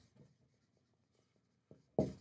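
Dry-erase marker writing on a whiteboard: faint short scratchy strokes as a word is written.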